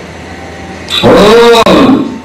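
A man's voice shouting one drawn-out, very loud cry into a microphone, starting about halfway through over a steady background hum.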